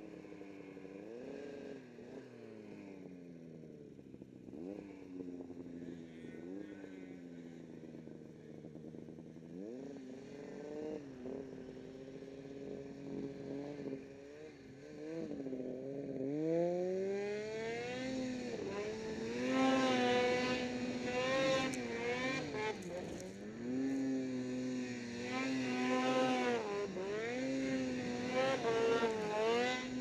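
Snowmobile engine revving up and down as the throttle is worked through deep snow, with many rising and falling surges. It gets louder and revs higher from about halfway through.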